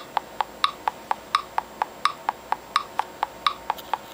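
Metronome app on an iPad clicking in triplets at about 85 beats per minute: a brighter click on each beat with two duller clicks between, a little over four clicks a second.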